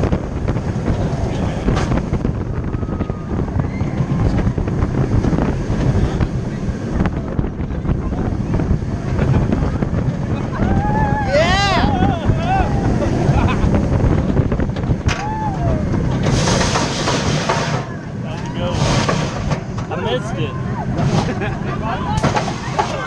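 On-ride sound of a steel roller coaster: heavy wind buffeting the camera over the rumble of the train, with riders screaming, loudest about halfway through.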